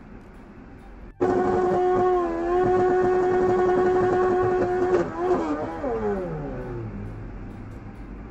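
Motorcycle engine doing a burnout: it starts suddenly about a second in and is held at high revs on one steady note for about four seconds while the rear tyre spins and smokes. The pitch then drops away as the revs fall.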